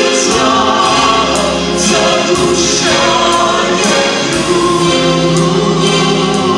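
A man and a woman singing a duet into microphones over musical accompaniment, with long held notes over a steady bass line.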